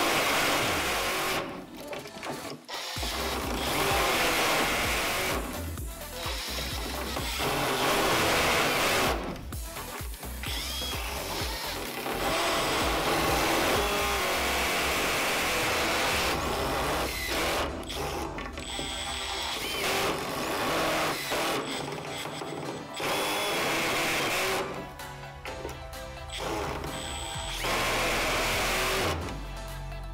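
Two Makita 18 V cordless impact drivers, the brushed DTD152 and the brushless DTD154, driving long wood screws into timber. They run in repeated bursts of a few seconds with short breaks between screws, their impact mechanisms hammering under load.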